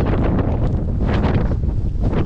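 Strong wind buffeting the microphone: a loud, steady, rumbling roar of wind noise.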